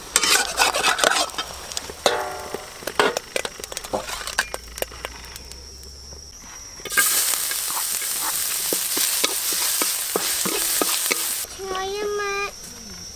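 A spatula scrapes and taps in a wok of frying egg. About seven seconds in, hot oil in the wok breaks into a loud, steady sizzle that lasts about four seconds and then cuts off.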